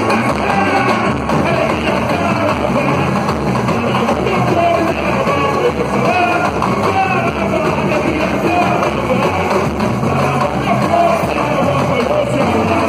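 A samba school's samba-enredo performed live: singers carrying the melody over the steady, driving beat of the samba percussion section (bateria).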